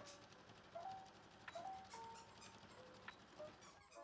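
A string of faint, short squeaks at changing pitches from a dog's squeaker toy being chewed.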